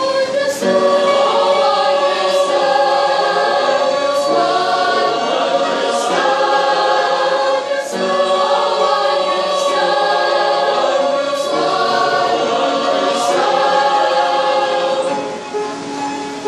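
Mixed choir of young women and men singing a hymn in held chords. The singing softens near the end.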